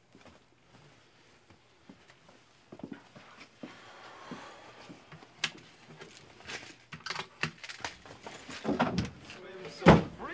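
Quiet handling sounds at a wooden cabinet: scattered clicks, taps and knocks of things being moved about on the shelves, starting a few seconds in and growing busier. A louder thump comes near the end.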